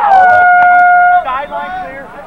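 A loud, long yell held on one high note for about a second, sliding down into the note at the start and then cut off. Fainter voices follow it.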